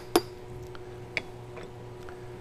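A wooden spoon knocks once against a stainless steel saucepan. About a second later comes a light clink with a short ring as the spoon is set down in a small glass bowl, over a faint steady hum.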